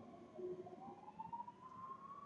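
Faint emergency-vehicle siren wailing, its pitch sliding down about half a second in and then rising slowly again.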